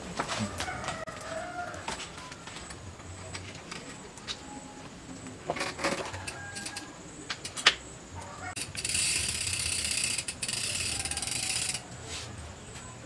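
A rooster crows in the background early on, with scattered light metallic clicks of a 12-speed bicycle chain being handled and threaded onto the drivetrain. Near the end comes a loud steady hiss of about three seconds that cuts off suddenly.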